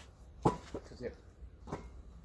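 A basketball bouncing on a concrete driveway: a few short thuds, the first one loudest, coming quickly at first and then one more near the end.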